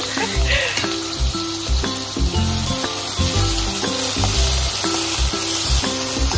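Chopped onions sizzling in hot oil in a wok as they are stirred with a spatula, over background music with a steady bass beat.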